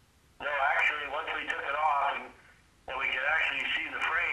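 Speech only: a man talking over a telephone line, his voice thin and cut off at the top and bottom as phone audio is. He starts about half a second in and talks in two stretches with a short pause between.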